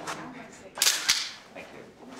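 A still camera going off in one short, sharp burst about a second in: the shutter firing and the film winding on, as a posed photograph is taken.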